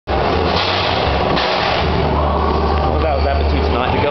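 Loud, dense babble of several voices over a steady low hum; one voice stands out near the end as the hum drops away.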